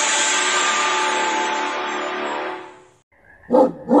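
Music fading out over about three seconds, then two loud, short dog barks about half a second apart near the end.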